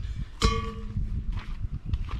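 A single sharp metallic clank about half a second in that rings briefly, with a steady low rumble underneath.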